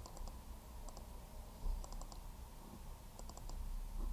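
Computer mouse clicking in quick little groups of three or four clicks, about four groups, over a faint low hum.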